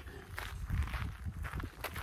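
Footsteps on gravel: a run of irregular steps.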